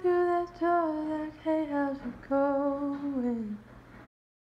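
A woman humming a wordless melody: a few held notes stepping down in pitch, the last one sliding down and fading.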